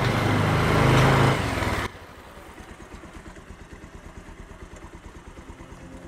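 Motorcycle engine running as the bike rides along the road, loud for about the first two seconds, then suddenly quieter with a steady, even pulsing.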